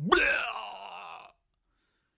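A single drawn-out vocal groan, voicing the sick python just before it throws up. It starts loud and fades out after about a second.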